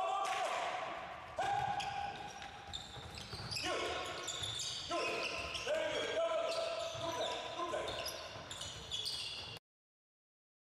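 A handball bouncing on a sports-hall floor amid players' voices and repeated long, high-pitched squeaks, echoing in the hall. It all cuts off suddenly near the end.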